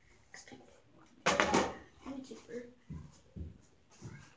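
A boy's voice making wordless sounds, with one loud, rough burst of noise about a second in.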